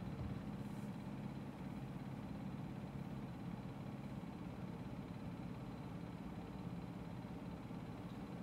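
A steady low hum with a faint even hiss: background room noise.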